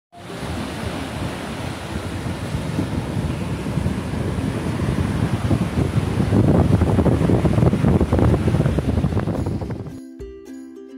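Sea surf washing onto a beach, a loud rushing noise that builds and eases, with wind buffeting the microphone.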